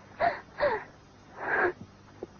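A woman's breathy voice in three short, whispery bursts, the last one longest.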